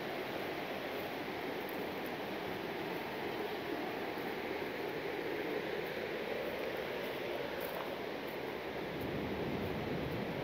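Steady rushing of a fast-flowing river, an even wash of water noise with no breaks.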